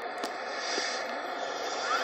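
Car FM radio on a distant station in weak tropospheric reception: a pause in the broadcast speech filled with steady FM hiss, with a brief click about a quarter second in.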